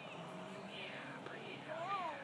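Faint, indistinct voices murmuring in the background, with one slightly louder rising-and-falling voice near the end.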